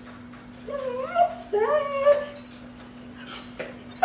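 German Shorthaired Pointer whining twice in drawn-out moans that rise in pitch, begging for attention toward something it wants on the kitchen counter.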